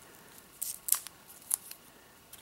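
Faint handling noise as a cardboard band is worked loose from a coiled cable: three short, light clicks, about half a second, one second and a second and a half in.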